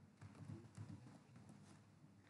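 Faint computer keyboard typing, a few irregular keystrokes as a password is keyed in.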